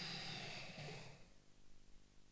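A man's long breath out through pursed lips into a handheld microphone, a soft hiss that fades away about a second in.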